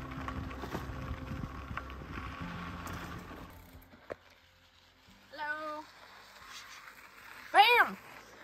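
Bicycle riding on a dirt forest road: a low, rattling rumble of tyres and bike on the rough surface, stopping about three and a half seconds in. Then a short vocal sound, and near the end a loud voiced call that rises and falls in pitch, the loudest sound here.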